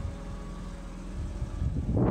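A Pontiac Fiero's 2.5-litre Iron Duke four-cylinder engine idling with a steady low rumble, and a louder rush of noise building near the end.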